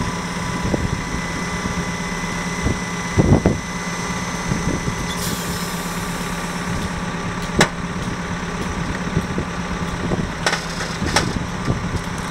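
Hydraulic pump unit of a multistrand post-tensioning jack running with a steady hum, a high whine in it dropping out about five seconds in. A few sharp knocks and clicks sound over it.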